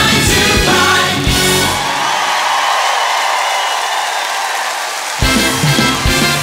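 Live musical-theatre band and cast ensemble singing the curtain-call music. About two seconds in, the bass and drums drop out for roughly three seconds, leaving a held vocal chord over the audience's applause. The full band then crashes back in.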